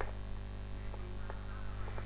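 Steady electrical mains hum on the recording, with about four faint clicks spread through it from keys being typed on a computer keyboard.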